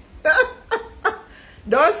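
A woman chuckling in three short bursts, then starting to speak near the end.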